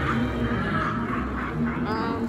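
Indistinct voices over background music.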